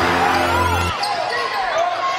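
Basketball game sound on an indoor hardwood court: the ball bouncing and short, bending squeaks of sneakers over crowd noise, with background music that drops out about a second in.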